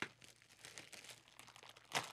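A blue plastic mystery-toy bag being torn open in the hands: faint, dense crinkling of the plastic, with a sharp crack as it starts.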